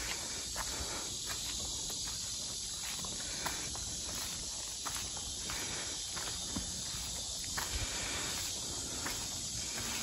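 Car-wash snow foam sitting on a car's paint, fizzing with a faint steady hiss and scattered small crackles, with a few soft footsteps on wet pavement.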